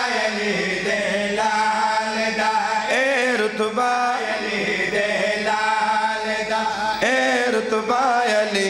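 A man's voice chanting a devotional recitation in long, sustained melodic phrases that glide up and down, with short breaks between lines. A steady low drone runs underneath.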